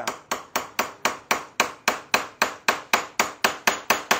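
A hammer striking a wood chisel in quick, even blows, about four a second, chopping the outline of a small mortise in a solid wood block. This is the first cut, made across the grain so the wood does not split.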